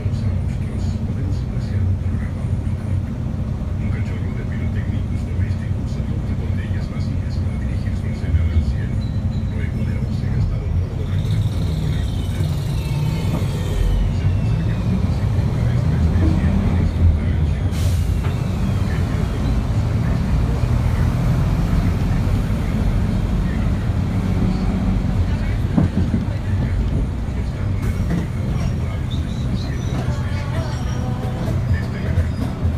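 Interior of a city bus riding through traffic: a steady low engine and road rumble. In the middle of the ride, a high thin squeal falls in pitch for a few seconds and then comes back briefly.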